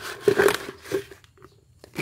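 Crunching and rustling of moist potting soil being pressed down by hand in a black plastic polybag, for about the first second, then quiet.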